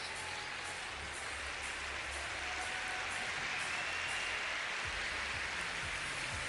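Arena audience applauding steadily at the end of an ice dance program, the clapping growing a little louder after a couple of seconds.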